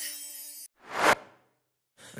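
A whoosh sound effect that swells for about a third of a second and cuts off sharply about a second in, between stretches of silence; before it, the held notes of the intro music fade out.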